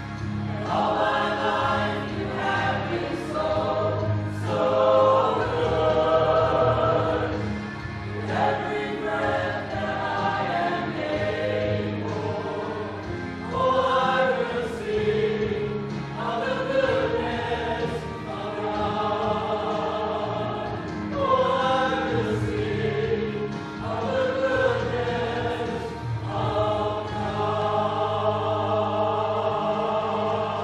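Mixed church choir of men and women singing a hymn in phrases a few seconds long over a sustained low accompaniment, ending on a long held chord.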